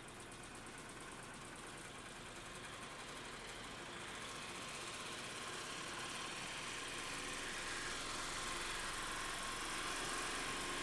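Homemade magnetic motor prototype running: a subwoofer pulsing back and forth, switched by a polarity switch, drives rare-earth magnet reciprocators that turn the magnet rotors on their shaft in a wooden frame. The mechanical running sound grows steadily louder as the motor speeds up.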